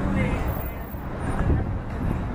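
Outdoor street noise: low traffic rumble and wind on the microphone, with faint voices of people nearby.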